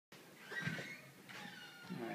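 Footsteps climbing carpeted stairs, with a couple of faint high-pitched squeaks.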